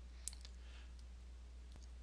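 A single soft computer-mouse click about a quarter second in, then a couple of much fainter ticks, over a steady low electrical hum.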